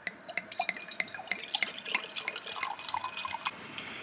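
White wine poured from a bottle into a stemless wine glass: a quick run of small splashes and bubbling that stops about three and a half seconds in.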